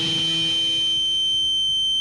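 Held final chord of a rock track: electric guitar ringing out with a steady high-pitched feedback whine over it.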